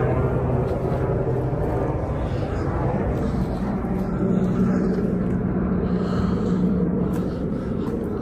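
A steady engine drone, its pitch stepping higher about halfway through.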